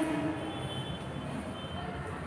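Steady low background noise with a faint high-pitched whine running through it.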